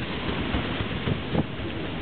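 Wind buffeting the microphone over the steady running noise of the paddle steamer PS Waverley under way.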